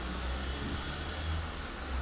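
Tattoo machine running with a steady low hum while its needle works ink into skin.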